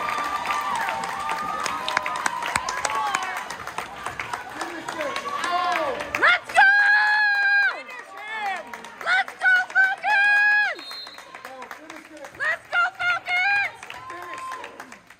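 Volleyball spectators cheering and clapping after a point, echoing in a gym, then high voices shouting a rhythmic cheer: a few long, held calls about halfway through, then four short ones near the end.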